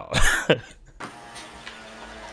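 A man's short, breathy laugh, followed from about a second in by a steady, fainter background hum.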